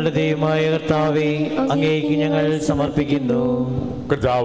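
A voice chanting a Malayalam liturgical prayer or response in long held notes, with a steady low tone underneath.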